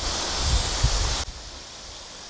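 Wind buffeting the microphone over a loud hiss for just over a second, which cuts off suddenly. After that, only the steady rush of a shallow, rocky river remains.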